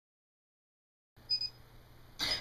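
Dead silence, then about a second in faint room tone with a low hum comes in and a short high-pitched electronic beep sounds once.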